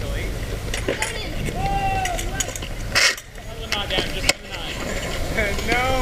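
Skateboard wheels rolling on the concrete of a skate bowl, a steady low rumble, with a sharp clack about three seconds in; voices call out over it.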